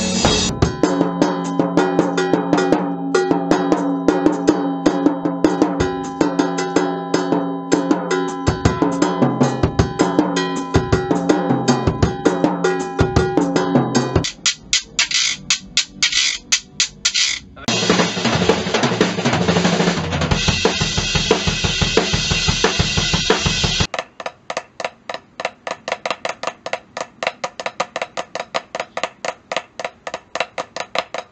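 Drum kit played full out, with snare and bass drum, for about the first half, breaking off into sparser sharp strokes from a wooden hand-percussion instrument, then dense percussion again. About six seconds before the end it switches to a quieter, even run of sharp taps: drumsticks playing rudiments on a practice pad.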